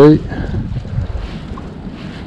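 Wind buffeting the microphone, a steady rumbling hiss, after a word that ends just as it begins.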